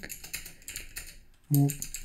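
Typing on a computer keyboard: a run of irregular key clicks, with a man's voice coming in near the end.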